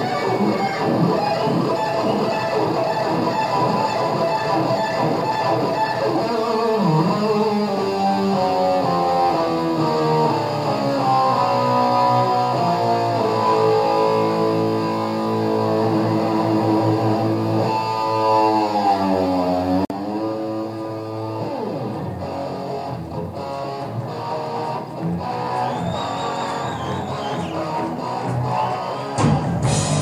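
Live lead electric guitar through an amplifier, playing long held and bent notes. A deep swoop down in pitch and back up comes about eighteen seconds in.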